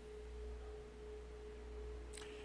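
A faint, steady pure tone that holds one pitch without wavering, over a low hum.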